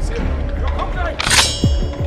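One metallic clang with a bright ringing tail a little past halfway, as a segmented metal staff is locked together, over low background music.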